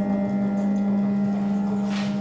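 Improvised experimental ensemble music: a steady low drone with several held higher tones above it, and a brief hissing swish near the end.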